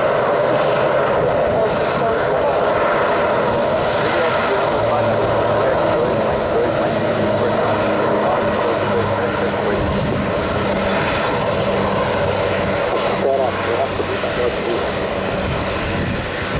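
Embraer E-Jet's twin CF34-10E turbofan engines running at taxi power as the jet rolls past close by: a steady, loud jet whine and rush.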